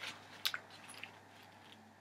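Mostly quiet, with one faint short click about half a second in and a few fainter ticks after it: the small handling noises of a plastic fashion doll and its clothes being turned in the hands.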